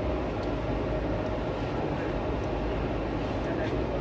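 Steady low noise with faint, indistinct voices of people talking at a distance.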